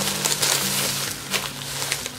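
Thin plastic shopping bag rustling and crinkling as items are pulled out of it, louder in the first part and dying down, over background music with steady low notes.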